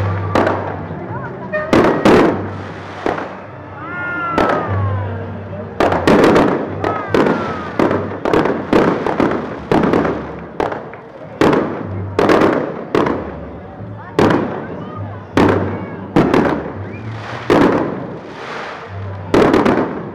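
Fireworks display: aerial shells bursting one after another, many loud bangs, often several a second, with a short lull a few seconds in.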